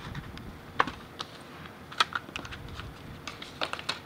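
Unboxing packaging being handled and cleared aside, a paperboard box tray and plastic-wrapped accessories: a string of irregular light clicks and taps, with sharper knocks about one and two seconds in and a quick cluster near the end.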